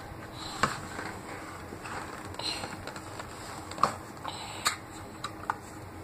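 A small child handling a cardboard six-pack carrier with a bottle inside: irregular sharp clicks and knocks of cardboard and bottle bumping, the loudest about four seconds in.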